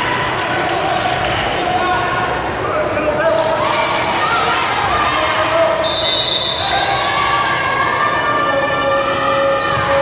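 Indoor volleyball game: the ball thuds as it is bounced and struck, under a steady mix of players and spectators calling out.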